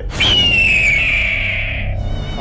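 Dramatic background-score sting: a single high, ringing tone that enters about a quarter second in and slides slowly downward in pitch for under two seconds, over a steady low musical drone.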